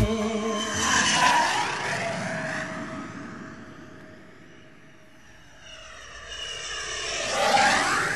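Two passing whooshes with no music: a rushing sound swells about a second in and fades away, then swells again near the end, its pitch sweeping up and down as it goes by, much like an aircraft flying past.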